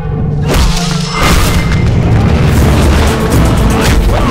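Fight-scene soundtrack of an action film: a booming background score with heavy bass under sound-effect hits. There is a sharp hit about half a second in and a bigger one just after a second, then a dense loud stretch, with another hit near the end.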